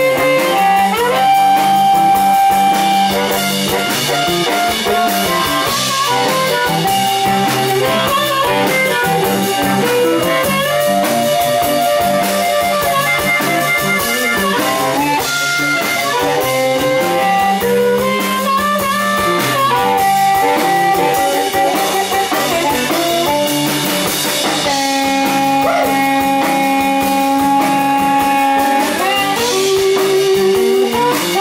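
Live electric blues band playing an instrumental passage: amplified harmonica, cupped around a handheld microphone, leads with long held and bending notes over electric guitar and drum kit.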